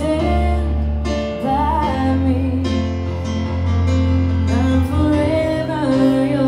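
A woman singing into a microphone while accompanying herself on piano, the melody gliding over long held bass notes.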